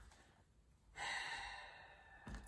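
A soft sigh of breath starting about a second in and fading away, after a second of near silence.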